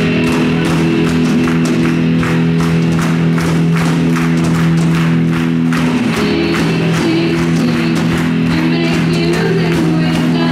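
Live worship band playing a song's opening: held chords over a steady beat on drum kit and electric guitar. Voices come in singing about six seconds in.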